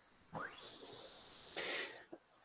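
A person's long, soft breath out lasting about a second, then a shorter breath in just before speaking.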